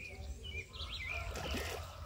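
Small birds chirping: several short, swooping high chirps in quick succession over a low steady rumble.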